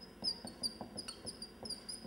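Marker squeaking on a whiteboard while writing: a run of short, high squeaks, several a second, with light ticks of the marker tip.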